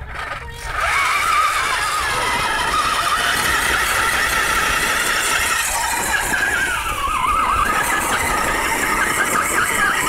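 RC4WD Trail Finder 2 scale crawler's electric drivetrain whining continuously as it crawls over rocks, the pitch wavering up and down. The whine dips briefly at the very start.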